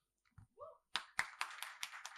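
Audience applause breaking out about a second in, many hands clapping unevenly after a moment of near silence.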